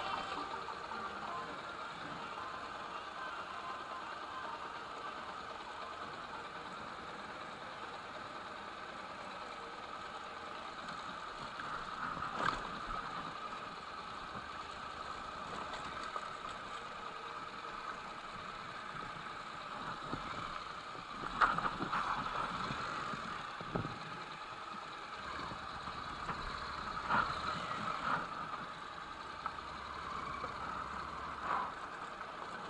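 Motorcycle engine running at low speed as the bike rolls along, steady, with brief louder swells about twelve seconds in, about twenty-one seconds in and near the end.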